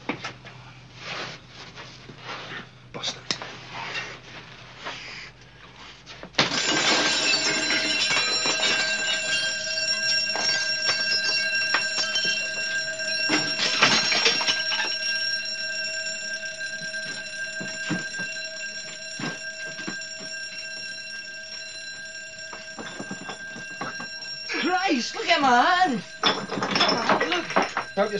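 Scattered clicks and knocks, then about six seconds in an electric burglar-alarm bell starts ringing suddenly and loudly, a steady continuous ring that keeps going.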